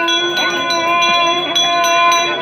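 Temple bells ringing continuously, several sustained tones struck again about four times a second.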